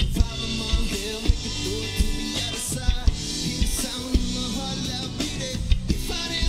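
Live rock band playing: electric guitar, bass guitar and drum kit, with regularly spaced drum strikes.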